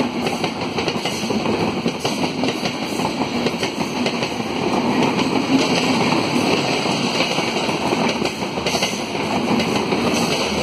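Coaches of an AC express train rolling past at speed: a steady rumble with wheels clattering over the rail joints.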